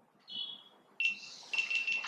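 A high chime: a short bright tone, then a sudden ringing tone about a second in, struck again about half a second later.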